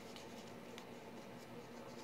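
Faint rustling and a few light ticks of die-cut cardstock stars being handled.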